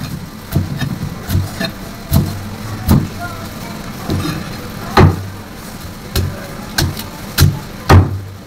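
Heavy cleaver chopping through fish into steaks on a thick round chopping block: about a dozen sharp chops at uneven spacing, the hardest about five seconds in and at the very end. A low steady hum runs underneath.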